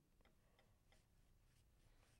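Near silence, with faint, short scratches of a blue colour stick shading on paper, a few strokes in quick succession.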